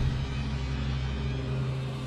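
A deep, low cinematic rumble under the title card, like a trailer's closing bass hit, held as a steady low drone that starts to fade near the end.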